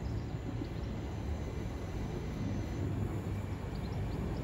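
Electric multiple unit train approaching along a station platform, a steady low rumble of wheels and traction on the rails. Faint bird chirps sound above it now and then.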